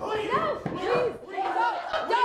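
Several teenagers shouting at once, overlapping yells with pitches that swoop up and down, like a battle cry.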